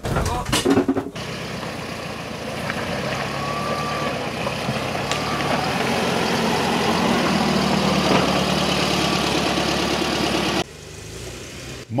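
Steyr-Puch Pinzgauer 710's 2.5-litre air-cooled petrol engine running steadily as the vehicle drives along a dirt track, growing louder as it comes closer. The sound drops suddenly to a quieter engine sound near the end.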